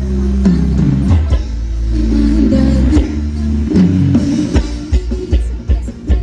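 Live band playing Thai ramwong dance music, with bass, guitar and drum kit. Held bass notes carry most of it, and near the end the drums take over with sharp, evenly spaced beats.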